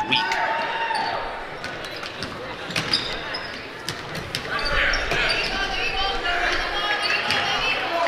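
A basketball bouncing on a hardwood gym floor during live play, a string of separate sharp knocks. Voices in the gym are heard behind it in the second half.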